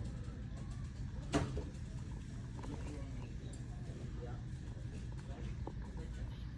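Store background sound: a steady low hum, with one short, sharp sound about a second and a half in.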